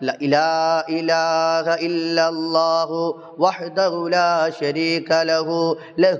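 A man chanting an Arabic dhikr in a melodic recitation style, in long held phrases that slide in pitch, with a steady low hum underneath.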